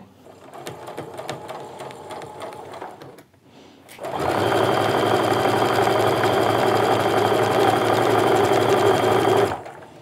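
Baby Lock domestic sewing machine stitching a seam through quilting-cotton strips: after a few seconds of softer noises and a short lull, the motor starts about four seconds in, runs steadily, and stops just before the end.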